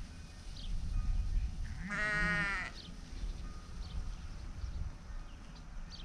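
A sheep bleats once about two seconds in, a single wavering call lasting under a second.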